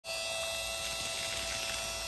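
Steady hum of a small electric water transfer pump (1/10 HP, 115 V) running, with water jetting from the end of a garden hose onto grass. It is pushing water out with good pressure.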